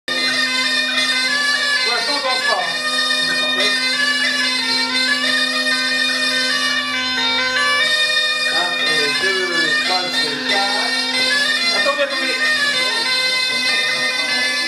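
Bagpipe playing a dance tune, its melody running over one steady, unbroken drone.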